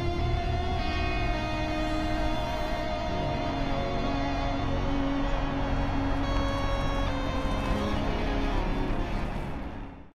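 Slow, sombre instrumental music with long held notes, fading out at the very end.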